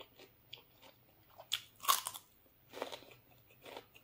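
Close-up crunching as a person bites into and chews a crisp raw vegetable: a string of short crunches, the loudest bite about two seconds in.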